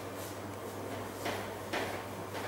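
Marker pen writing on a whiteboard, with two short scratchy strokes a little past halfway and near the end, over a steady hiss and a low electrical hum.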